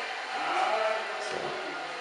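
A man's voice, faint and hesitant, drawing out a filler 'so', over quiet room noise.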